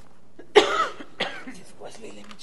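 A person coughing twice: a loud, sudden cough about half a second in, then a shorter, quieter one just over half a second later.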